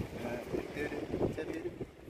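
Wind buffeting the microphone in uneven gusts, with faint voices talking in the background.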